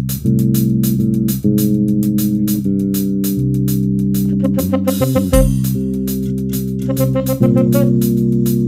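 Live instrumental jazz: electric bass and keyboard chords over a drum kit keeping a steady cymbal beat, with a short break in the groove about five seconds in.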